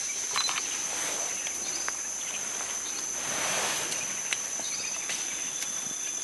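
Forest insects keeping up a steady high-pitched drone. About halfway through there is a brief rustle of leaves and stems, and a few faint clicks and chirps are scattered through it.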